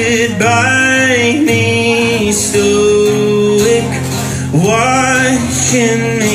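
A man singing long held notes over his own acoustic guitar strumming, a solo acoustic live performance.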